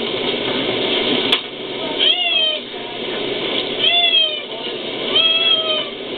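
A cat meowing three times, a second or two apart; each meow lasts about half a second and rises then falls in pitch.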